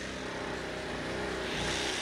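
A vehicle engine running steadily at an even pitch, growing slightly louder.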